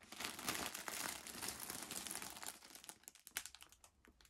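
Clear plastic bags of yarn crinkling and rustling as a hand digs among them in a storage box and lifts one out. The crackling is busiest for about the first three seconds, then thins out.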